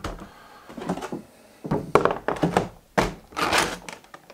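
A large vinyl figure being handled and put back into clear plastic packaging: a few dull thunks and plastic handling noises.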